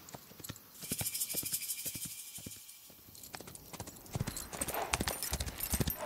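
Horse hooves clip-clopping in a quick run of hoofbeats, softer in the middle and louder again near the end, with music underneath.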